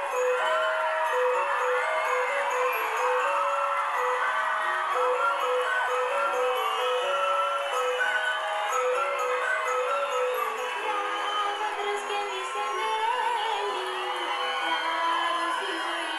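Studio music with a bright, bell-like melody of short, even notes, with a crowd cheering and calling out over it as guests are welcomed onto the stage.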